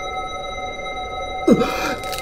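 A steady, held electronic tone sounding at several pitches together, with a brief vocal sound about one and a half seconds in.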